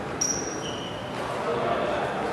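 Badminton rally: a sharp hit about a fifth of a second in, then two short high squeaks, one after the other, typical of court shoes braking on the rubber court mat.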